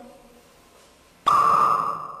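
Hydrogen in a test tube igniting at a spirit-lamp flame: a sudden loud squeaky pop that rings on as a high whistling tone, fading away within about a second. It is the classic pop test showing the gas is hydrogen.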